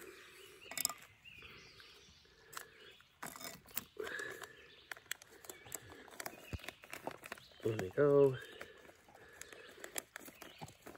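A small clear plastic packet of peanuts crinkling and rustling in the hands, with scattered light clicks, as the peanuts are shaken out onto a trail meal. A man's voice gives a short hum a little before the end, and faint bird chirps come through now and then.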